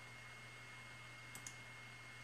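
Near silence with two faint, quick clicks close together about a second and a half in, over a faint steady hum.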